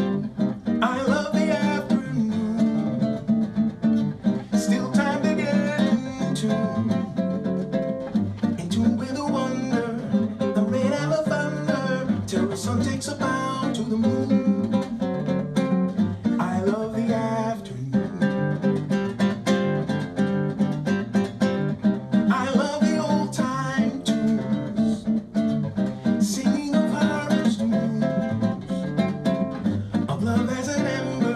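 A cutaway nylon-string classical guitar played solo, a continuous flow of picked notes and chords.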